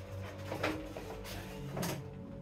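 Two short plastic knocks about a second apart as an air fryer's basket is handled and pushed into the fryer, over background music.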